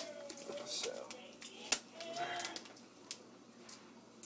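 Handling noise as a raw turkey in a plastic bag is worked on by hand: plastic rustling and a few sharp clicks, growing quieter in the last second or so.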